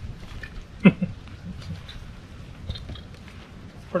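Light clicks and knocks of a paramotor frame being handled and folded down. About a second in comes one brief, louder sound that drops sharply in pitch.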